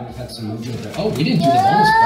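Children shrieking with excitement: a stretch of quieter voices, then a long, high squeal that rises and holds, starting a little past halfway.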